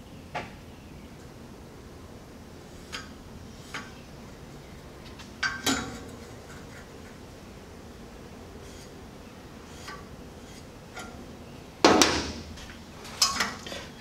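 Sparse clinks and knocks of square steel tubing and small tools handled on a steel workbench. A louder metallic clatter comes about twelve seconds in, as the tube goes into the bench vise, followed by a few more knocks.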